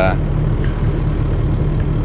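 An engine idling steadily with a low, even hum.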